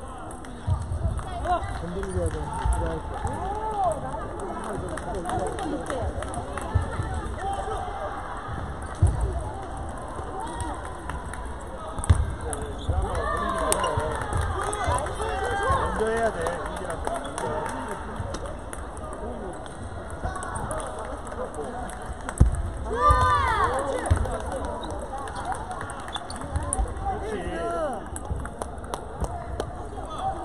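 Table tennis hall ambience: voices and calls from around the hall over scattered sharp knocks of ping-pong balls and footsteps on the wooden floor.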